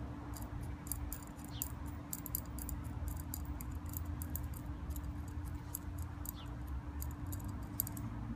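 Small metal nut and washers being handled and threaded onto a bolt by hand: many quick, light clicks and ticks. Under them runs a low steady rumble.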